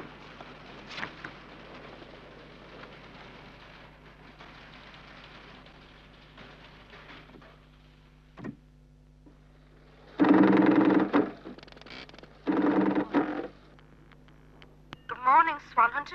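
A few soft clicks of switchboard keysender buttons being pressed over a faint hiss, then a telephone ringing twice, each ring about a second long.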